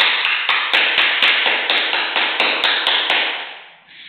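Hands clapping in a quick steady rhythm, about four claps a second, fading away shortly before the end.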